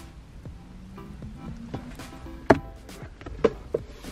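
Sharp plastic clicks from a car's centre armrest console lid being unlatched and lifted open: one loud click about two and a half seconds in, then two lighter ones about a second later. Soft background music plays underneath.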